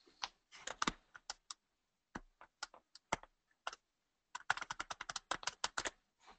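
Computer keyboard keys being pressed: scattered single keystrokes, then a fast run of typing in the last second and a half.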